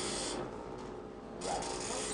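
Two short mechanical rasps: a brief one at the start and a longer one of about half a second near the end.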